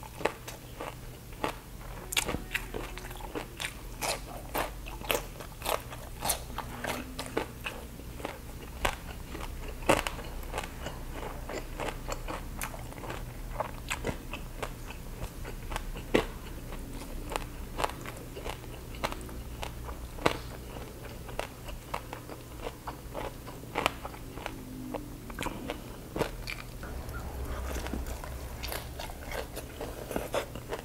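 Close-miked ASMR eating: a person biting and chewing crunchy food, crispy baked pork belly skin and raw cucumber, with many irregular sharp crunches, several a second, throughout.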